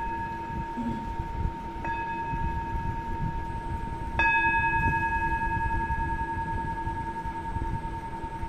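Singing bowl struck twice, about two seconds in and again more loudly about four seconds in, each strike ringing on long over a steady low drone.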